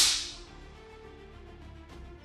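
A sharp, whip-like swish at the very start that fades out over about half a second, then faint steady background music.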